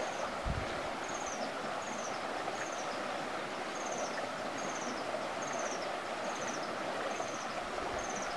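Quiet streamside outdoor ambience: a steady soft hiss of running water, with a short, high, falling chirp repeating about once a second throughout. A single soft low thump about half a second in.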